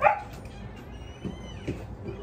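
A dog whining faintly in a high, wavering tone, with a couple of soft thuds later on. A short burst of voice comes at the very start.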